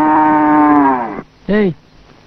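Cow mooing: one long, level call that falls in pitch as it ends, about a second and a quarter in, followed by a short second sound near the end.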